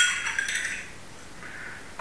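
A spoon clinks against a glass once, and the ring fades away within the first second. Only faint handling sounds follow.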